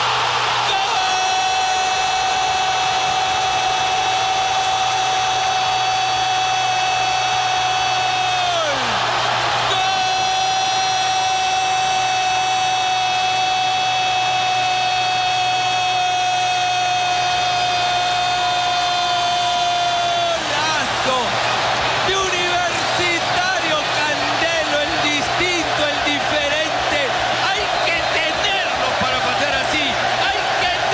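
Spanish-language football commentator's long goal cry: one high note held for about eight seconds, falling as the breath runs out, then held again for about ten more seconds. Excited rapid commentary over crowd noise follows. The cry greets a goal from a free kick.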